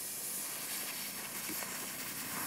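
One long, steady hiss of air drawn in through the mouth over a curled tongue: the inhale of the cooling breath (sitali pranayama).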